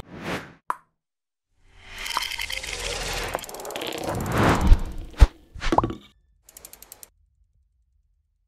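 Animated logo sting sound effect: a short whoosh and a click, then a swelling whoosh with sharp pops and hits, ending in a quick run of ticks.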